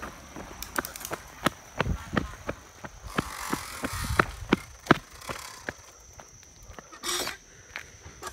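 Bicycle ridden over a rough path: irregular rattling clicks and knocks from the bike, with wind buffeting the microphone in gusts.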